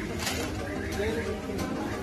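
Indistinct voices of people talking in a supermarket aisle, with no words clear enough to make out.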